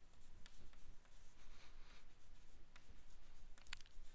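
Chalk scratching faintly on a blackboard as a word is written out, in short strokes about a second apart.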